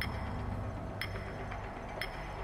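Game-show clock ticking once a second, sharp electronic ticks with a short high ring, over a low steady musical drone.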